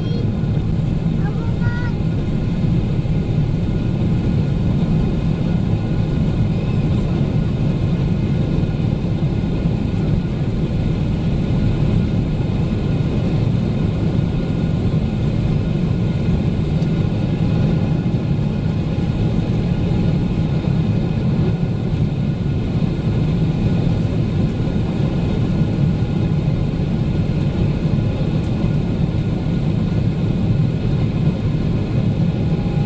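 Steady cabin noise of a Boeing 777-300ER climbing after takeoff: a low, even rumble from its GE90-115B engines at climb thrust, mixed with rushing airflow, heard from a seat beside the wing.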